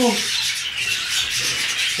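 Rustling, scraping noise of sprouted seed being handled and stirred in a container as it is portioned out.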